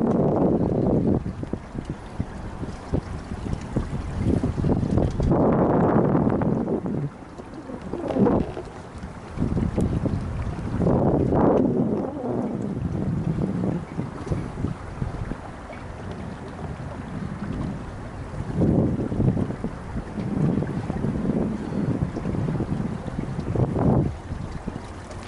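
Wind buffeting the microphone on a sailboat's deck, coming in irregular gusts every few seconds.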